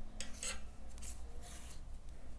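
Cotton yarn rasping as it is drawn through crocheted stitches, in about three short scratchy strokes.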